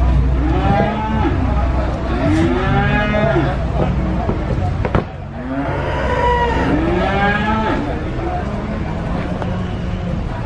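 Several cattle mooing, their long rising-and-falling calls overlapping in two bouts, over a steady low drone. A single sharp knock comes about halfway through.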